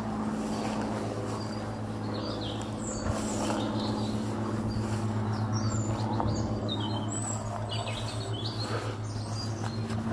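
Small birds chirping in scattered short calls over a steady low mechanical hum.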